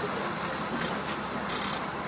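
International DT466 turbo-diesel of a 2006 IC CE school bus idling steadily just after being started, heard from the driver's seat inside the bus.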